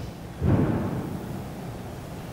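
A low, muffled rumble of noise that starts suddenly about half a second in and fades away over about a second.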